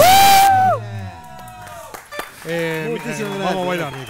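A live cumbia band ends its song on a loud final held note with a cymbal crash, which cuts off under a second in. From about two and a half seconds in, voices talk and exclaim.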